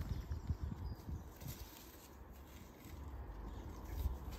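Quiet outdoor background with a low rumble and a few soft rustles and scrapes in the first second or so, as a squash seedling is worked out of a plastic module tray in the soil.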